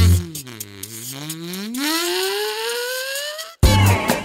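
Electro-swing music in a break: the beat drops out and a single pitched tone swoops down, then slides slowly upward for a couple of seconds. It cuts off suddenly, and the full swing beat comes back near the end.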